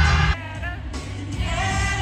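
Live concert music played loud through an arena sound system: a singer's voice over a backing track with heavy bass. The bass cuts out about a third of a second in, leaving the voice, and comes back just past halfway.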